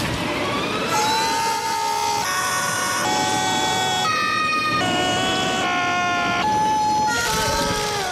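A loud series of held pitched tones that jumps to a new pitch about once a second, with a sliding rise at the start and a sliding glide near the end, over a noisy backdrop.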